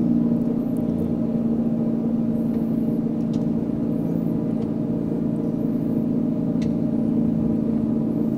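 Simulated aircraft engine sound from the flight training device, a steady low drone with the rpm just reduced ahead of the descent.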